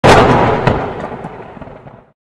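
Logo-intro sound effect: a sudden loud blast-like impact that dies away over about two seconds, with a second sharp crack about two-thirds of a second in.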